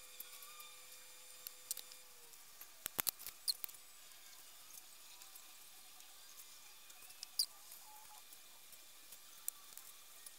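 Faint, scattered clicks and taps from handling small makeup tools and containers (a liner wand in its tube, a pencil), over quiet room tone. The loudest come as a quick cluster about three seconds in and a single click a little past seven seconds.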